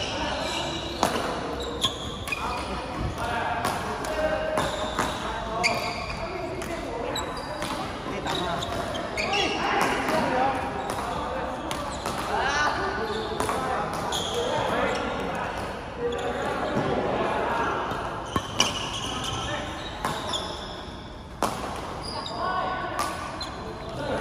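Badminton racket strikes on a shuttlecock: sharp pops repeated at irregular intervals, over a steady babble of voices in a large, echoing sports hall.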